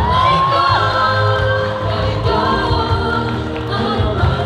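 Singers performing a Mandarin pop ballad live through a PA over a backing track with a steady bass. Near the start a voice slides up into a held note.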